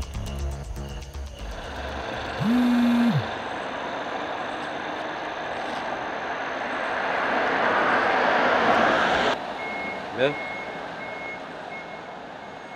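Road traffic: a steady rush of passing vehicles that swells to about nine seconds in and then cuts off suddenly, with a short low horn blast about two and a half seconds in. An intermittent high-pitched beeping runs through the last two seconds, over brief background music at the very start.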